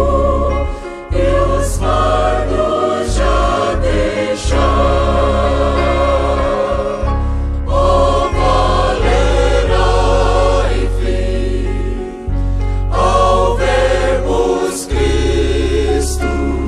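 Choir singing a gospel hymn over instrumental accompaniment with a heavy bass, in phrases broken by short pauses.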